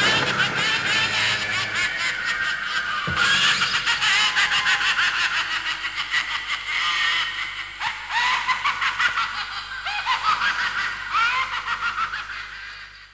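Funfair crowd sound effect: many people laughing and squealing, with a low steady hum beneath.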